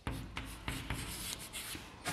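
Chalk writing on a chalkboard: a run of short scratching strokes as words are written by hand.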